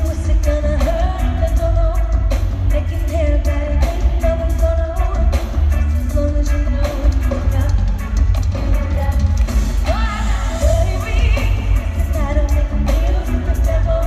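Live pop concert: a female lead vocal sung over a band with heavy bass, heard from high up in an arena.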